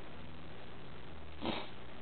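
A man sniffing once, a short sniff about one and a half seconds in, through a runny nose from being out in the cold. A steady low hum runs underneath.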